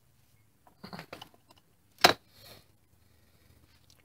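Light handling noises from work on a trailer wheel hub: a few soft clicks, then one sharp click about two seconds in, with a brief rustle after it.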